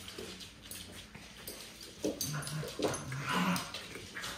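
Small dogs at play, giving a few short whines and grumbles, mostly in the second half.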